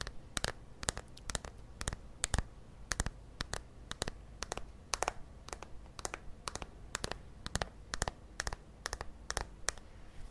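Fingernails tapping on the white plastic case of a Banila Co cushion compact held close to the microphone: an uneven run of sharp clicks, about three a second.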